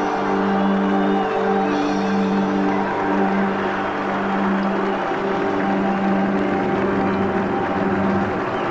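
A live rock band playing the closing bars of a song: a low sustained note repeats about once a second with higher notes over it, over a continuous wash of band and hall sound.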